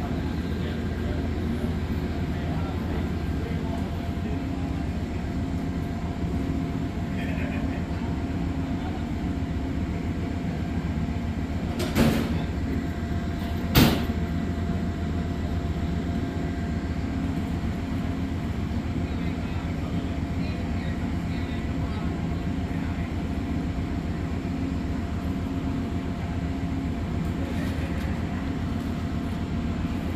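Stopped Amtrak passenger train idling at a station platform, a steady low mechanical hum. Two sharp clunks come about two seconds apart, a little before the middle.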